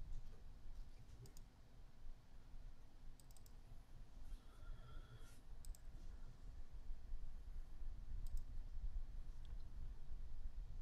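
A few faint, sharp clicks, some in quick pairs, scattered over a low, steady background hum.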